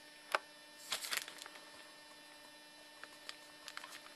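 Faint steady electrical hum, with a few sharp small clicks: one about a third of a second in, a quick cluster about a second in, and a few fainter ticks near the end.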